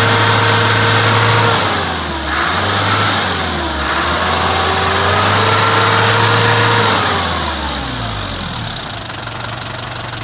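Isuzu Elf truck's diesel engine held at raised revs, dipping twice briefly, then let down to a steady idle about eight seconds in.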